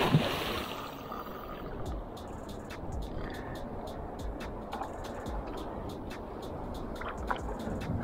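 A hooked tarpon splashing hard at the surface at the very start, fading within about a second. It is followed by steady water and wind noise with scattered light clicks.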